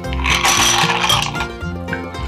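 Ice cubes tipped from a glass into a hollowed-out pineapple shell, a loud clattering rush that fades after about a second and a half, over background music.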